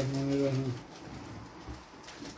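A person's voice holding one long, level hum that stops about three-quarters of a second in, followed by faint room noise.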